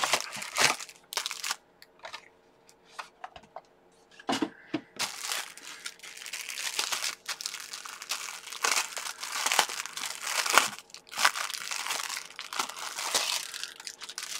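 Clear plastic packaging crinkling as it is handled and pulled open by hand. At first there are a few scattered rustles, then nearly continuous crinkling from about a third of the way in, with a brief pause near the end.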